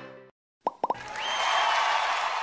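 Background music fades out, then three quick popping sound effects a little under a second in, followed by a rising swish: the animated sound effects of a like-and-subscribe end card.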